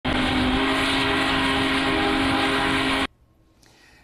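Union Pacific Big Boy 4014 steam locomotive's whistle blowing one long, steady chord of several tones over a loud rushing noise. It cuts off abruptly about three seconds in.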